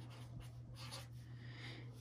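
Faint scratching and rubbing on paper over a steady low hum.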